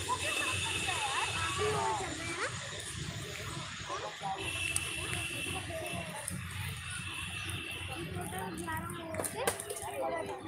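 Distant, unclear voices of players calling across a cricket ground, over a low steady rumble, with a single sharp knock near the end.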